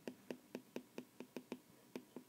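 Faint, quick clicks of a stylus tapping on a tablet surface while handwriting, about five a second.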